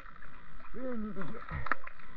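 A person's voice muffled by water, one pitched sound rising and falling about a second in and then sliding down low, over scattered small water clicks and gurgles from the underwater camera.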